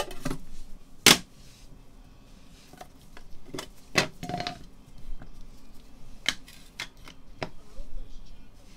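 Clear hard-plastic card cases clicking and knocking as they are handled and set down: a string of sharp separate clicks, the loudest about a second in.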